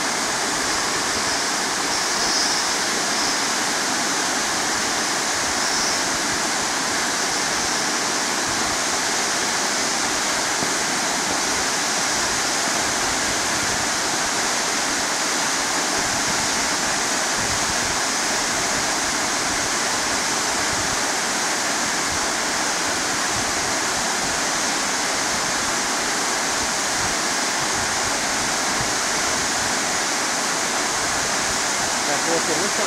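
Waterfall plunging over a rock cliff into a pool: a steady, unbroken rush of falling water.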